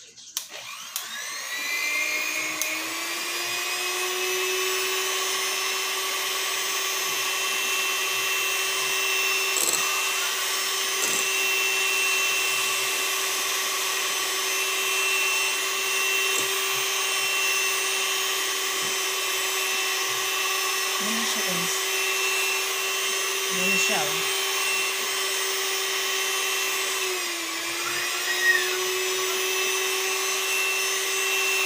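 Electric hand mixer switched on, its motor whine rising as it comes up to speed, then running steadily as the beaters whip a cream mixture in a bowl. Near the end the pitch dips briefly and recovers.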